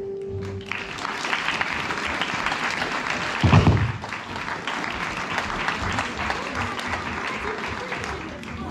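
The last held note of a traditional tune fades out, then an audience applauds steadily. About three and a half seconds in there is one loud, low thump close to the microphone.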